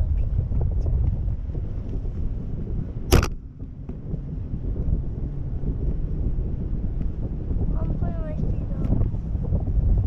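Wind rushing over a camera microphone high on a parasail rig, a steady low rumble. One sharp click comes about three seconds in, and a brief faint voice sounds about eight seconds in.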